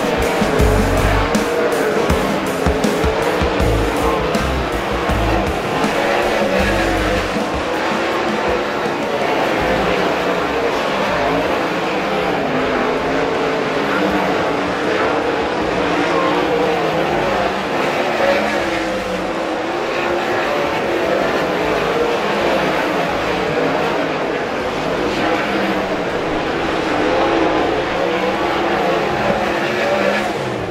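Several winged sprint cars' V8 engines running on a dirt track, several at once, their pitch rising and falling as the cars circle and pass.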